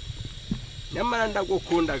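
A person speaking, starting about a second in, over a low, steady rumble.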